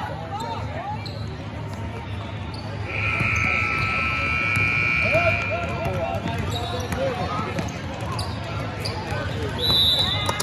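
Basketball game on a hardwood gym floor: a ball bouncing and other short knocks, with spectators' voices. About three seconds in, a steady high-pitched tone sounds for about two and a half seconds, the loudest thing heard, and a shorter high tone comes near the end.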